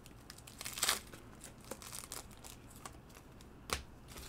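Trading card pack's wrapper crinkling quietly as it is handled and torn open, with a brief louder rustle about a second in and a sharp click near the end.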